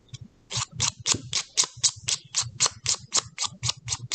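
A nail file rasping along the paper-covered edge of a metal washer in quick, even strokes, about five a second, beginning about half a second in. It is filing away the excess paper.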